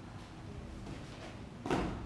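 Nunchaku being swung, with one short, loud sound near the end.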